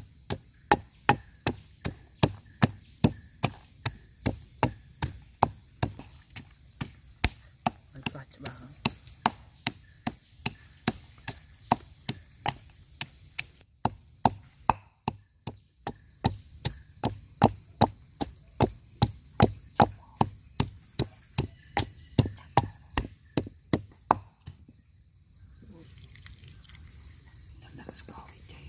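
Pestle pounding red chilies and garlic in a heavy mortar, about three strokes a second, with a brief pause in the middle, stopping a few seconds before the end. Crickets chirr steadily behind it.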